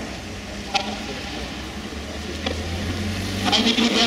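Porsche 917LH's air-cooled flat-12 engine running at low speed as the car rolls slowly, a low steady drone that swells about two seconds in. Voices come in near the end.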